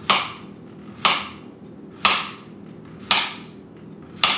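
Kitchen knife slicing through a zucchini onto a cutting board: four sharp chops about a second apart.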